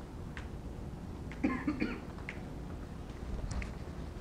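A person coughing, two or three short coughs about a second and a half in, over the low hum of a classroom, with a few faint clicks.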